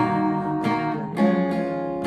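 Cutaway steel-string acoustic guitar with a capo, strummed chords ringing out, with fresh strums at about two-thirds of a second and just over a second in.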